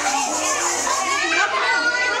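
Many young children chattering and talking over one another, a steady babble of high voices.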